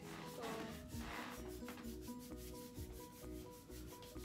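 Faint background music: short notes at a few fixed pitches repeating in a pattern over a soft, even ticking beat, with a brief rustle about a second in.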